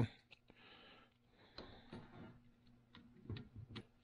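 Faint, scattered light clicks and small knocks of a screwdriver bit working the screws of a carburetor's throttle position sensor as it is tightened down, over a faint steady hum.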